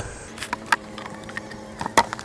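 Several short, sharp knocks and clicks of beehive parts being handled, the loudest right at the end. Under them runs a faint steady hum of honey bees.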